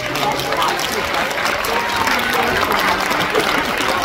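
Audience applauding steadily, with voices over it.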